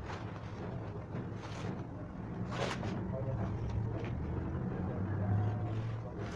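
A steady low hum throughout, with a few brief rustles and knocks of fabric and a measuring tape being handled.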